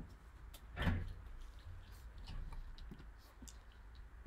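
Quiet room with a low steady hum, a soft thump about a second in, and a few faint, sparse clicks.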